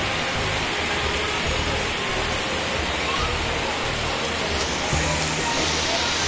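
Heavy monsoon rain pouring steadily onto trees and the ground, a dense, even hiss.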